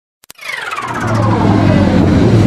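Logo intro sound effect: two quick clicks, then a low rumble swelling up under a whine that slides down in pitch.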